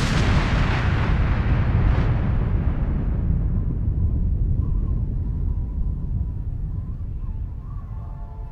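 A huge explosion as an asteroid blows apart: the hiss of the blast fades over the first few seconds while a deep rumble slowly dies away. Faint music comes in near the end.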